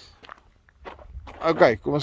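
A man's voice speaking, after about a second of quiet with faint footsteps as he walks alongside the tractor's track.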